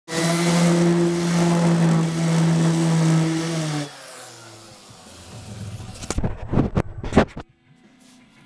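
Electric palm sander running on wooden trim, a steady motor hum with sanding noise, switched off just under four seconds in. Then a few seconds of sharp knocks and bumps as the camera is handled.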